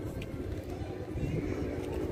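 Steady low rumble of outdoor background noise, with faint scattered higher sounds over it.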